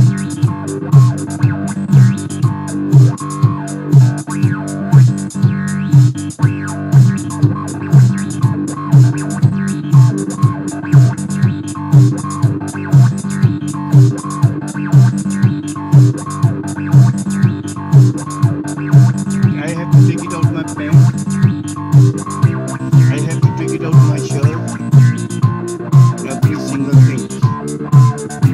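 Korg Monologue monophonic analog synthesizer playing a funky bass line over a steady electronic drum beat, with loud low notes pulsing in a regular rhythm.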